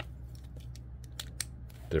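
A few short, sharp plastic clicks and ticks from a Transformers Studio Series 86 Bumblebee figure being handled, as its gun is worked into the vehicle-mode body.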